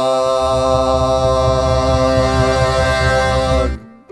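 Final chord of a western harmony song: voices hold one long note in harmony over the band, then cut off together just before the end.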